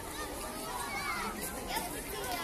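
Outdoor crowd of adults and children talking among themselves, many voices overlapping in steady chatter.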